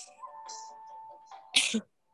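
Quiz-game background music with steady tones, and about one and a half seconds in a single short, loud sneeze.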